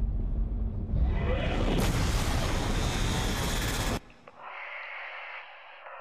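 Movie-trailer sound effects: a deep rumble with a rising whoosh that builds, then cuts off sharply about four seconds in, leaving a quieter, thinner muffled sound.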